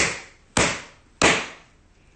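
Three sharp hand slaps, about half a second apart, each dying away quickly.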